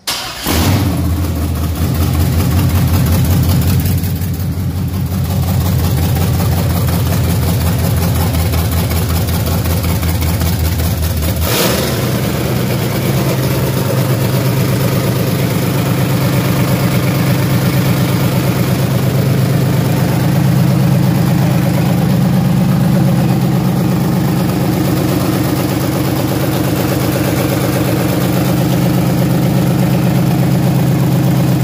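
Freshly installed Chevrolet V8 with a four-barrel carburettor, running loud and raw through open headers with no exhaust fitted. It comes in abruptly, and about eleven seconds in a sharp click is followed by a change to a steadier idle note.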